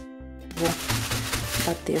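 Sand poured from a scoop into a plastic bag: a gritty, rustling pour with plastic crinkling that starts about half a second in, over soft background music.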